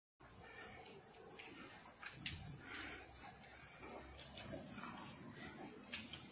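Faint outdoor ambience dominated by a steady high-pitched insect chorus, with a faint click a little over two seconds in.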